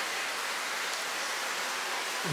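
Steady, even rushing noise of water running through aquarium filtration.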